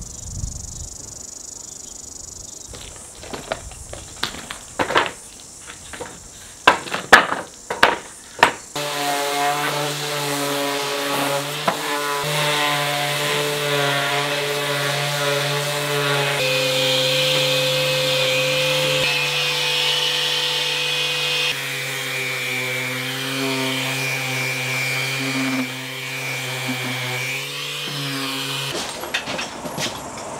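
A skip bin of old timber being hoisted onto a hook-lift truck: several seconds of knocks and clatters as the debris shifts. Then a random orbital sander with a dust-extraction hose runs steadily on painted timber weatherboards, its tone wavering under load and jumping abruptly a few times where clips are cut together.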